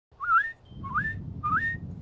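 Three short whistled notes, each sliding upward, evenly spaced about half a second apart, over a low background rumble.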